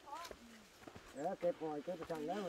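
A person talking, faint at first, then clearer and louder from about a second in.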